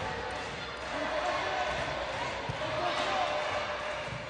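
Volleyball rally in an indoor sports hall: the ball is struck, with a sharp low knock about two and a half seconds in, over a steady murmur of the crowd in the hall.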